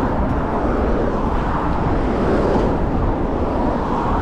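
Steady, loud rush of ride noise from a camera on a moving e-mountain bike: wind on the microphone and rumble, with traffic running on the road alongside.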